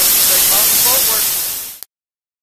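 Sandblasting nozzle blasting abrasive against the steel keel and hull of a 1911 W. H. Mullins launch to strip rust down to bare steel: a loud, steady hiss that cuts off abruptly near the end.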